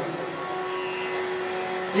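Steady background hum with a few faint, even held tones.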